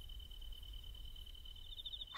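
Faint, steady, high-pitched insect trill, with a low hum beneath it, in a pause with no speech.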